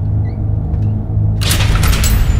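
Steady low rumbling drone of a dramatic soundtrack bed. About one and a half seconds in, a loud noisy whoosh rises over it into the cut.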